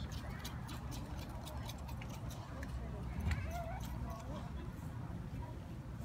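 Faint distant chatter over a steady low rumble, with scattered light irregular clicks; no music is playing yet.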